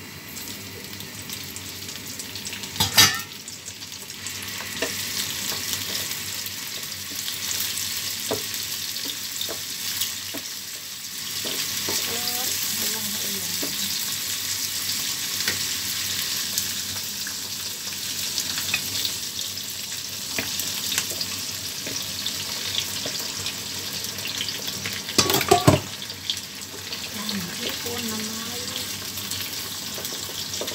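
Shrimp frying in hot oil with garlic and ginger in a nonstick frying pan: a steady sizzle that grows louder a few seconds in, with a wooden spatula scraping and stirring. There is a loud knock about three seconds in and another a few seconds before the end.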